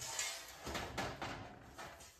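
A sheet-steel tabletop sliding and knocking lightly against a steel welding table's frame as it is lifted and turned up on edge. It is a soft scraping with a couple of faint knocks, fading out.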